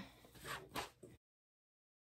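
A few faint, soft rustles, then dead silence from a little past a second in.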